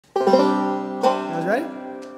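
Bluegrass string band striking up a tune, with a five-string banjo to the fore: a chord rings out just after the start, and another strike comes about a second in.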